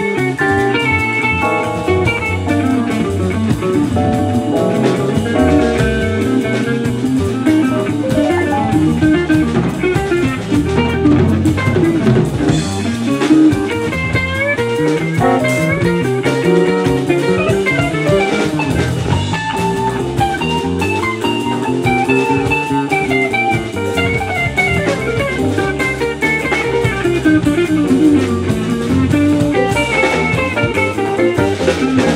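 Live jazz band playing: electric guitar runs fast single-note lines over electric bass and drum kit.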